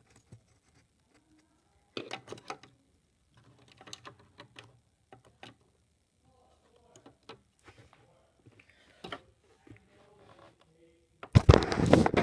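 Plastic toy figures and playset pieces handled and set down: scattered light clicks and taps, with one sharper click about nine seconds in. A child's voice starts just before the end.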